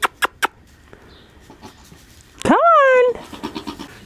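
A goat kid bleating once, a single high call about two and a half seconds in that rises and then falls in pitch. A few sharp clicks come in the first half second.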